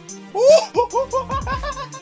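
A young man laughing in a high-pitched run of short rising "ha" syllables, about six a second, starting about a third of a second in.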